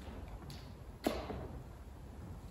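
A faint tick about half a second in, then a single sharper knock just after a second, as things are handled on the altar table, over a low steady hum of room tone.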